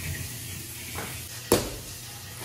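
A steady low hum with a single sharp knock about one and a half seconds in.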